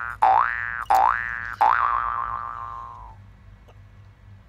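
Cartoon boing sound effect: a twanging tone that rises in pitch, repeated three times in quick succession, the last one ringing out and fading away about three seconds in.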